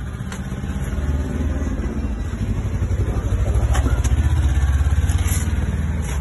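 A motor vehicle engine running close by, a low pulsing rumble that grows louder about halfway through and eases near the end.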